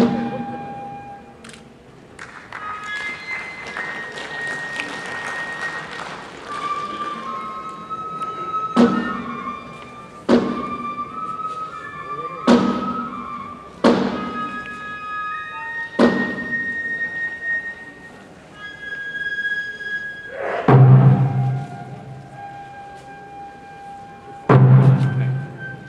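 Kagura hayashi: transverse bamboo flutes play a held melody that steps from note to note. Single sharp drum strokes land every second or two through the middle, and a heavier low stroking on the large barrel drum comes near the end.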